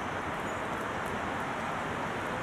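Steady outdoor background noise, an even rushing hiss with no distinct event standing out.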